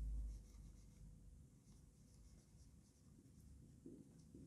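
Marker pen faintly scratching and squeaking on a whiteboard as a word is written. A low rumble fades out within the first half second.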